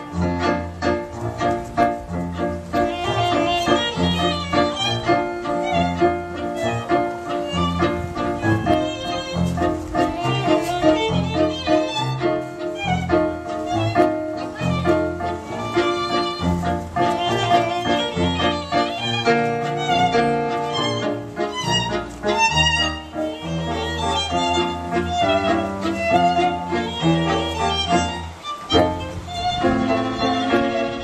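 A string quintet playing live: violin melody over lower strings, with a rhythmically pulsing bass line beneath.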